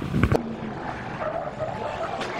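A short knock at the very start, then a pickup truck's engine revving hard as the truck slides on pavement.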